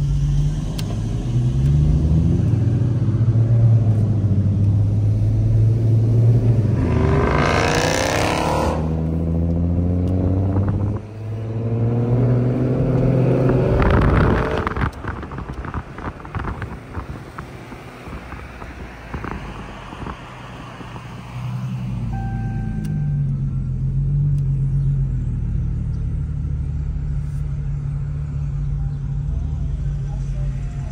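Dodge Challenger HEMI V8 heard from inside the cabin, running at cruise, then revved hard about eight seconds in with a steeply rising pitch and easing off; a second hard pull comes a few seconds later. After a quieter stretch of road noise, a steady engine drone returns near the end.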